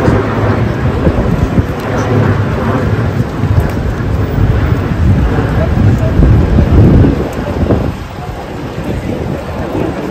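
Gusty wind rumbling on the microphone, loudest about six to seven seconds in, with rain pattering on the umbrella overhead.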